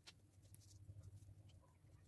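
Near silence: a low steady room hum with a few faint ticks, the clearest just at the start, from hands handling craft materials.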